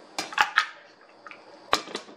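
Metal spoon clinking against a glass measuring jug of sour-cream sauce: three quick clinks, then a single sharper click near the end.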